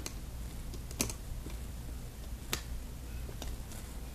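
A few sparse, light clicks of a plastic hook and rubber bands against the pegs of a plastic Rainbow Loom as the bottom bands are looped up, the clearest about a second in and another at about two and a half seconds, over a low steady hum.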